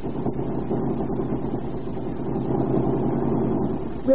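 Radio-drama sound effect of an automobile motor running steadily, heard on a 1930s broadcast recording.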